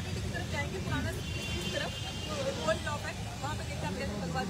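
Voices of a crowd talking over one another, no one voice standing out, over a steady low rumble.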